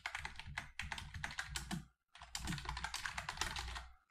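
Rapid typing on a computer keyboard: a fast run of keystrokes, with a brief break about halfway.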